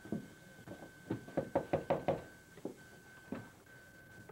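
Knuckles knocking on a wooden front door: a quick run of about eight raps lasting about a second, with a few single knocks before and after. A faint steady high tone runs underneath.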